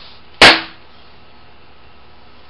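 A single hard hand strike on a stacked quarter section of concrete patio slab: one sharp, loud impact with a short ringing tail.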